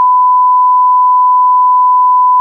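Test tone at 1 kHz, the reference tone that goes with colour bars: one loud, steady, unbroken pure beep.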